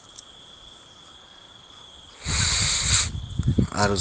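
A steady high-pitched whine runs in the background. About two seconds in comes a short, loud burst of rustling noise, and a voice starts speaking near the end.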